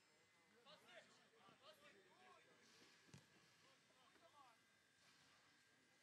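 Faint, distant voices calling out over near silence, with a single thump about three seconds in.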